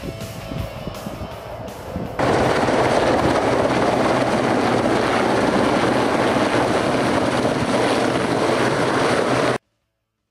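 Background music for about two seconds, then an abrupt cut to the loud, steady noise of a military helicopter running close by. It stops suddenly near the end.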